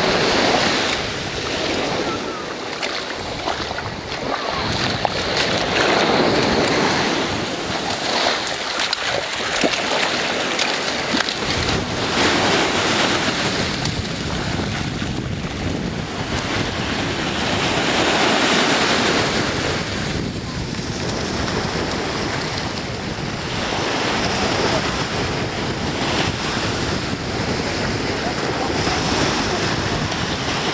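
Ocean surf washing in the shallows, with wind rushing on the microphone. The water noise swells and ebbs every few seconds.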